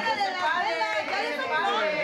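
Several people's voices overlapping at once: lively group chatter around a table.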